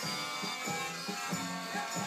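Music from a vinyl record playing on a studio turntable, heard in the room at a modest level.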